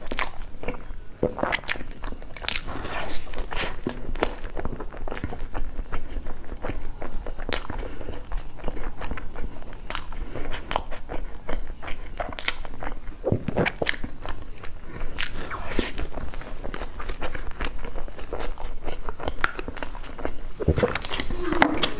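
Close-miked eating of soft crepe rolls: bites and chewing, with irregular mouth clicks throughout.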